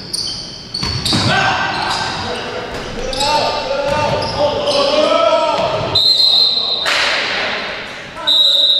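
Pickup basketball play on a hardwood gym floor: the ball bouncing, sneakers squeaking in short high squeals, and players calling out, all echoing around a large hall.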